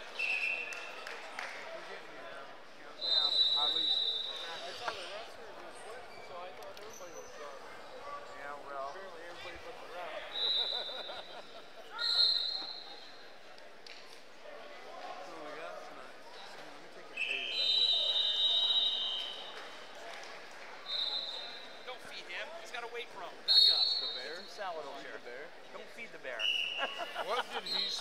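Referee whistle blasts, about seven of them at two different pitches and each a second or two long, over the steady murmur of a crowd and distant voices echoing in a large hall.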